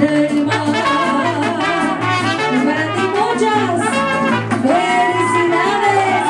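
Mariachi band playing live: trumpets carry the melody over a steady bass line of about two notes a second, with a long held trumpet note in the second half.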